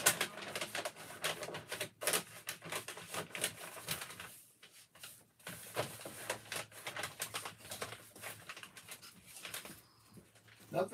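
Handling noise: irregular small clicks and rustles, several a second, from hands working with small objects, with a quieter gap around the middle.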